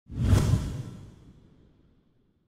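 Title-card whoosh sound effect: a sudden swoosh with a deep low boom that peaks within the first half second, then fades away over about a second and a half.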